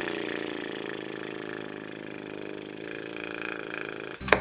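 A woman's long, drawn-out sigh, voiced as a low, creaky groan that slowly fades away.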